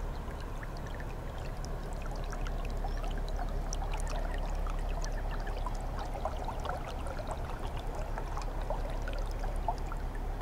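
Water splashing and trickling along the bow of a narrowboat cruising slowly, with many small crackles and drips, over a steady low drone from the boat's engine.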